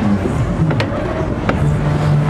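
Onboard noise of the Turbo Force swing-arm ride high above a fairground: a steady rushing noise as the arm carries the riders round, with two sharp clicks and a steady low hum coming in near the end.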